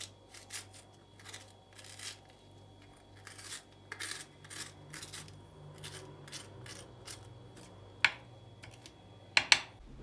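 Metal dessert spoon scraping the seeds and pith out of a red kapya pepper: a run of short, soft, irregular scraping strokes, with a sharper click about eight seconds in.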